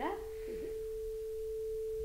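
Steel tuning fork mounted on an open-ended wooden resonance box, ringing one pure, steady tone with a long sustain.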